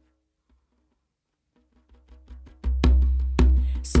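Near silence for the first part, then the song's intro fades in: a quick, even run of djembe hand strokes growing louder, joined by a deep bass about two-thirds of the way through.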